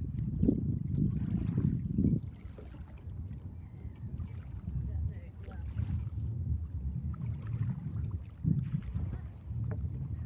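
Wind buffeting the microphone in uneven gusts, heaviest in the first two seconds and again briefly a little past eight seconds.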